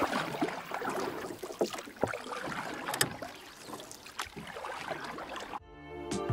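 Fabric rustling with irregular clicks and knocks in a folding kayak's cockpit as a spray deck is pulled on and fitted. A sharp click comes about halfway through, and music begins near the end.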